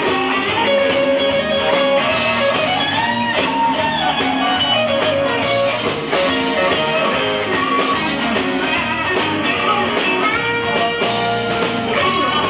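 Live blues band playing, with an electric guitar lead taking bent notes that slide up and down in pitch over the band.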